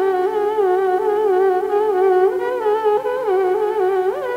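Carnatic violin playing a slow, sustained melodic line in raga Kalyani, the pitch gliding and oscillating continuously in gamakas, over a steady drone with no percussion.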